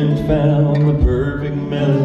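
A man singing long, drawn-out notes of a slow ballad over acoustic guitar strumming.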